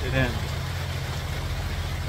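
A steady low machine hum runs throughout, with an even hiss of rain behind it.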